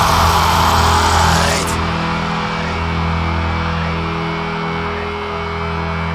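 Melodic death metal recording: the dense full-band sound thins out about a second and a half in, leaving sustained low notes that carry on more quietly.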